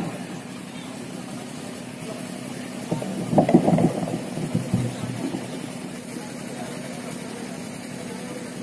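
A steady low hum, with a short burst of voices about three seconds in.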